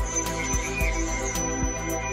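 Background music with sustained tones over a beat of low drum hits.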